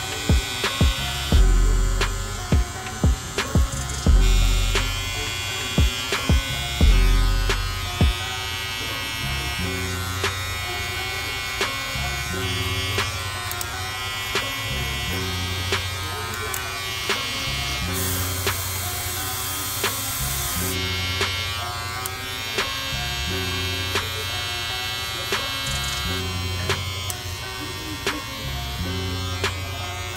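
Electric hair clipper buzzing steadily as it fades a beard and sideburn, under background music with a beat; heavy bass hits stand out in the first eight seconds.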